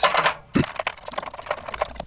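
A rapid run of light metallic clicks and rattles as a water heater's anode rod is spun loose by hand with a socket and drawn up out of its threaded port in the top of the tank.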